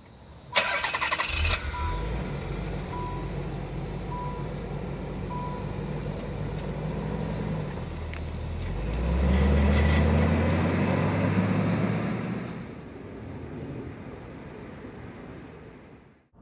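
A 1993 Nissan 300ZX Twin Turbo's 3.0-litre twin-turbo V6 is started: it cranks and catches about half a second in, then idles. The car's warning chime beeps about every half second for the first five seconds. Around the middle the engine note rises for a few seconds, then drops back to a quieter steady run.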